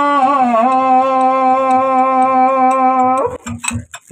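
A male folk singer holding one long sung note for about three seconds, its pitch dipping slightly near the start and then steady, before it breaks off; a few brief clicks follow near the end.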